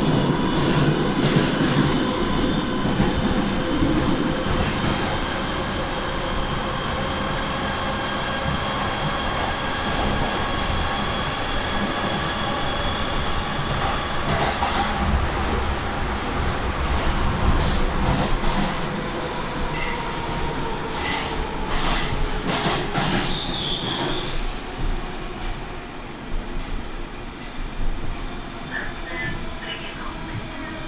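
Moscow Metro train heard from inside the car while running through the tunnel: a steady rumble of wheels on rail with a faint motor whine and some wheel squeal. A few clicks come through in the second half, and the sound grows quieter over the last few seconds as the train slows into the station.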